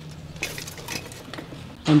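Light scuffs and scrapes of a shoe and hand on rough stone while climbing up onto a low stone wall, with faint camera-handling noise.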